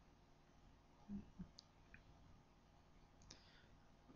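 Near silence with a few faint, short clicks of a computer mouse, a couple about a second in and another near three seconds, as the list is scrolled.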